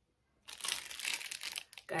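Clear plastic packaging bag crinkling and rustling as it is picked up and handled, starting about half a second in.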